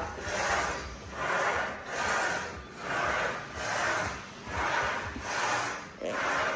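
Smith machine bar sliding along its steel guide rods during quick partial squats: a rasping rub that swells and fades about every 0.8 s, once on each down and up stroke.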